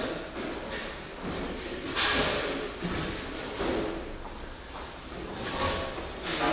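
Bustle of people moving about a large room: a noisy scrape about two seconds in, scattered knocks and shuffling, and faint indistinct voices.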